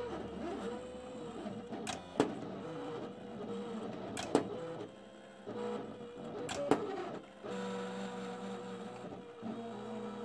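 Silhouette electronic cutting machine cutting cardstock: its stepper motors whine steadily, the pitch bending up and down as the blade carriage and rollers change direction, with a few sharp clicks along the way.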